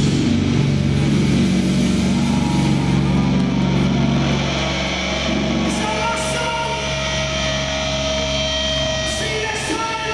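Live doom-metal guitar and bass holding a sustained low drone without drums. After about four seconds it fades back, leaving steady high ringing tones of amplifier feedback.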